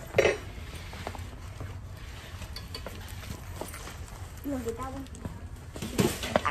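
Big-box store ambience: a steady low hum with small clinks and rustles, a short loud burst of noise just after the start, and faint voices in the background about five seconds in.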